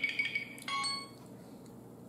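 Light clinks of cutlery and dishware, a few sharp taps with brief ringing, in the first second, then a quiet room.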